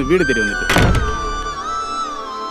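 A heavy wooden door shutting with a single thunk about a second in, over background music of held tones that shift in pitch.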